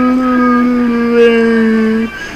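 A person's voice holding one long, steady note, dipping slightly in pitch about a second in and cutting off at the end.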